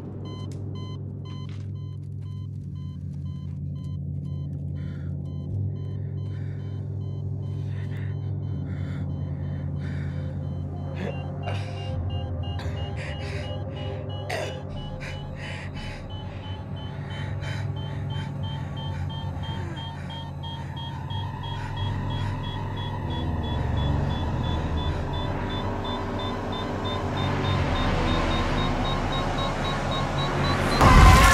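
Bedside heart monitor beeping at a regular pace, the beeps slowly rising in pitch through the second half, over a low, rumbling drone of film score.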